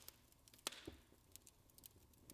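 Near silence: room tone, with a few faint clicks, the clearest about two-thirds of a second in.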